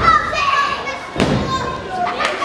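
A heavy thud about a second in, from a wrestler's body landing on the wrestling ring canvas, over the shouting of a crowd with children's voices.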